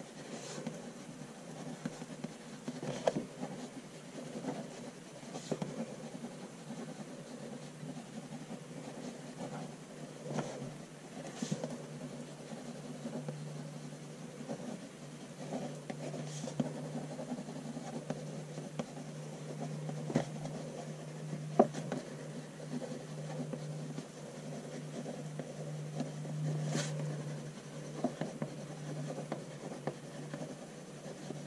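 Soft HB graphite pencil writing cursive on a journal page, scratching faintly and continuously with a few sharp clicks. A low steady hum comes in about halfway through.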